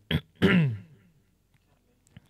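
A man clearing his throat: a short catch, then a brief voiced sound that drops steeply in pitch.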